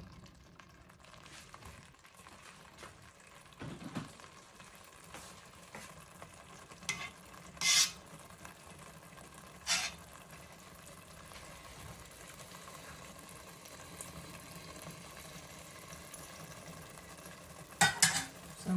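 A utensil stirring thick stew in a stainless steel pot over a quiet, steady simmer, with a few short knocks and scrapes of the utensil against the pot.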